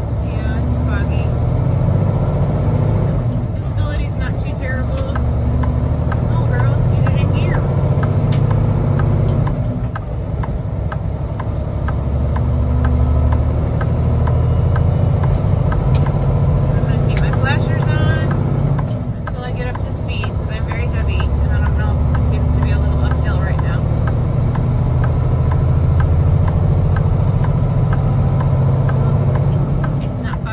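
Kenworth T680 semi truck's diesel engine running steadily under way, heard from inside the cab as a deep drone that dips briefly twice, about ten and nineteen seconds in.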